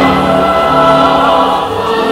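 A group of voices singing long held notes over instrumental accompaniment, like a choir.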